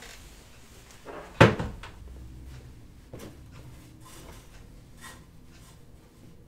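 Someone working at an ironing board: one sharp knock about a second and a half in, then a few faint clicks and rustles.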